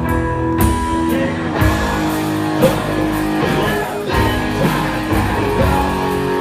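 A live rock band playing an instrumental stretch of a song, led by a semi-hollow electric guitar over drums, loud and amplified.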